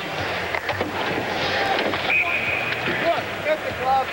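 Ice hockey rink sound: a steady wash of skates on ice with sharp clacks of sticks and pucks. A referee's whistle sounds one short, steady blast about two seconds in, and brief shouts from players come near the end.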